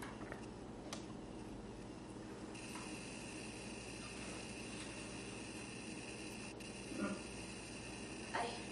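Quiet room with a few faint, sharp clicks from the audiometer's tone switch, which the child is taken to be hearing and answering instead of the tone. A faint steady high hum sets in a couple of seconds in.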